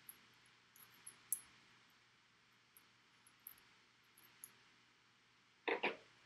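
Faint, brief scrapes and ticks of a steel nail scratched across a quartz crystal in a hardness test, with a short louder sound near the end. The nail leaves no mark: the quartz is harder than steel.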